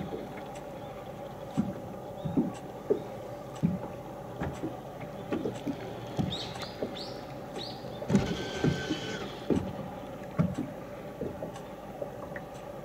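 Steady low hum of a Garmin Force electric trolling motor holding the boat on its anchor lock, with irregular soft knocks against the hull.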